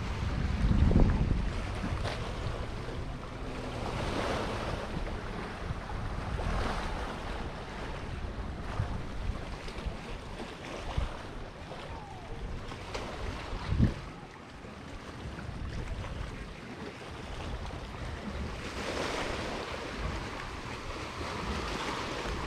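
Wind blowing over the microphone outdoors, swelling and easing in gusts, with a single short knock about fourteen seconds in.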